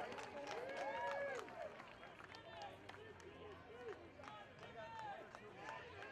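Indistinct chatter of a small crowd, with a few light clicks.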